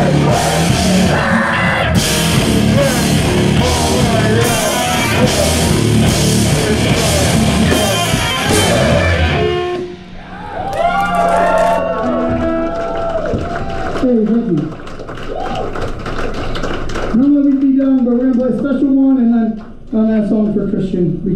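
Mathcore band playing live at full volume: distorted guitars, bass and drum kit with crash cymbals struck on a steady beat. About halfway through the song cuts out, and sustained guitar notes and feedback ring on, bending up and down in pitch.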